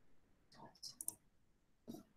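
Faint clicks of a computer being operated: a few quick clicks about halfway through and one more near the end, as screen sharing is stopped.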